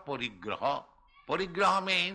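Speech only: a voice talking in two short phrases with a brief pause between them.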